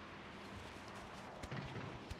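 Quiet outdoor background noise, with a few faint soft taps and low sounds about one and a half seconds in; no clear ball strike.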